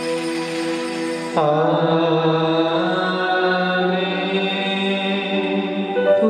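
Sung liturgical chant in long held notes, with a change of note about a second and a half in.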